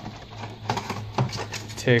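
Cardboard and paper of a Pokémon card collection box rustling and scraping as it is handled and its paper insert pulled out, with a few light clicks.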